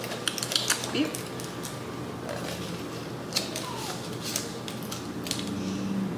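Aluminium foil over a plastic party cup crinkling and clicking as it is handled, in short irregular bursts mostly in the first second and a half, with a few more later.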